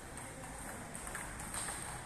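Table tennis rally: a few light, hollow clicks of the plastic ball striking the paddles and bouncing on the table, with the ring of a large hall.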